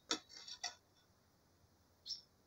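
A few faint ticks of water drops falling from a branch into a plastic bucket of collected water, all within the first second.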